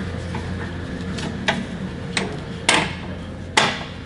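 About half a dozen scattered clicks and knocks as a TIG torch cable and its plug are handled and fed through to the negative terminal inside a multiprocess welder's side compartment, the two loudest in the second half, over a steady low hum.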